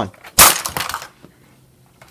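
A section of a Lego Saturn V rocket crashing into a Lego Hogwarts castle: one loud plastic crash about half a second in, followed by a brief clatter of small bricks breaking off.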